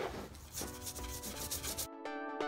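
Stiff bristle paintbrush dry-brushing, rubbed in quick rasping back-and-forth strokes across paper towel and EVA foam; the strokes cut off just before the end. Background music with sustained notes comes in underneath about half a second in.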